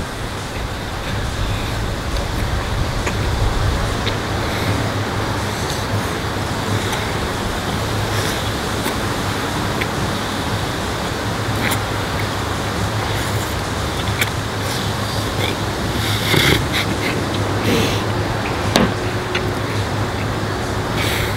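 Steady outdoor background noise, like distant traffic, with a constant low hum and a few faint clicks towards the end.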